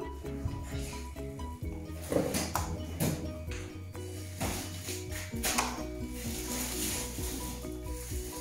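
Background music: a steady low bass under a melody of short, evenly paced notes, with a few sharp clicks and knocks rising out of it.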